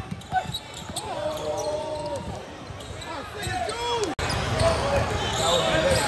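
Basketball bouncing on a hardwood gym floor amid scattered shouts from players and spectators, echoing in a large hall. A little past the middle an abrupt cut brings a louder, busier wash of crowd and court noise.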